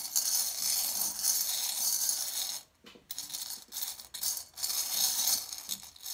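Small metal charms jingling and clinking against each other in a bowl as fingers stir through a heap of them, a steady rattle for about two and a half seconds, then a brief pause and scattered single clinks.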